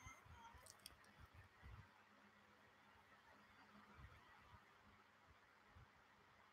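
Near silence: room tone, with a few very faint small clicks about a second in and again about four seconds in.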